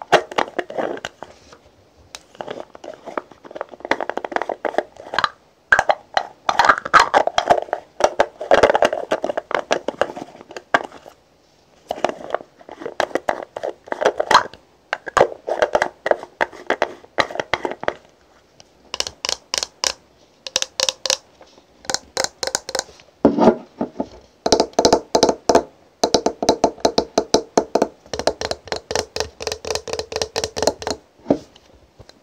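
Fingernails tapping quickly on the lid of a round cosmetic jar, in bursts of rapid taps with short pauses between them.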